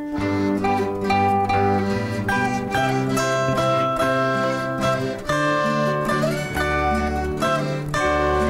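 Instrumental passage of an Erzgebirge folk song played by a small band on plucked string instruments, a melody of quick picked notes over a moving bass line, with no singing.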